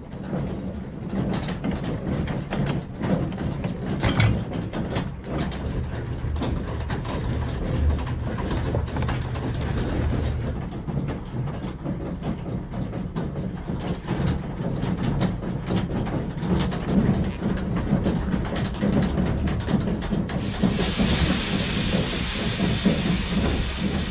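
Water-powered corn mill at work, its undershot water wheel driving the iron gearing and millstones: a steady low rumble with constant irregular clatter and knocking. About twenty seconds in, the hiss of grain poured from a sack into the hopper joins it.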